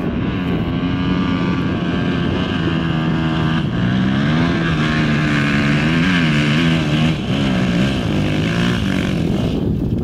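Enduro dirt bike engine climbing a steep hill under load, its revs rising and falling repeatedly as the throttle is worked. The engine note fades out near the end.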